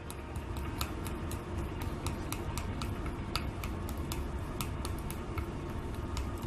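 A utensil stirring melted milk chocolate in a small glass bowl, mixing in a drop of black candy color oil: a quick, irregular run of light ticks as it knocks and scrapes against the glass.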